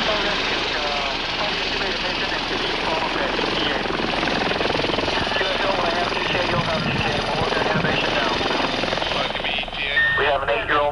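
Steady, loud helicopter engine and rotor noise heard from inside the cabin, with indistinct voices and radio chatter buried in it.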